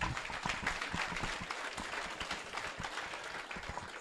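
An audience applauding: many hands clapping together in a steady, even patter.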